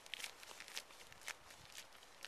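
Faint footsteps on a gravel path, about two steps a second.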